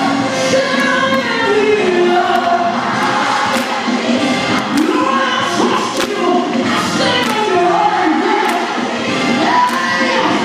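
A live gospel song played loud through a PA: a woman sings the lead into a handheld microphone, with backing voices and drums behind her.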